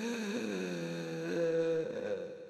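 A voice holding one long, low chanted note, wavering in pitch at the start, then steady, and stopping near the end.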